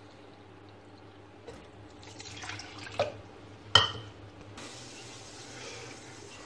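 Kitchen tap water running into a plastic measuring jug at a steel sink, with two sharp knocks about three seconds in. A steady hiss comes in near the end.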